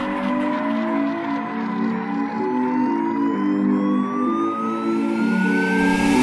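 Electronic dance music build-up: a single synth tone rises steadily in pitch over sustained synth chords that change every second or so.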